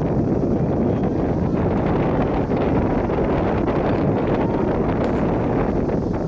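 Steady wind rumble buffeting the camera microphone.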